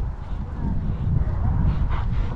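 Wind rumbling on the microphone of a camera worn by a rider on a moving horse, with a few faint short calls in the distance.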